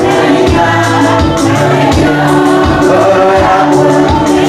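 Gospel music: several voices singing together over instrumental accompaniment with bass notes and a steady beat.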